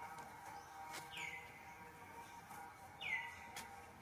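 Two short, high-pitched animal calls about two seconds apart, each sliding sharply down in pitch and then levelling off, over a faint steady hum.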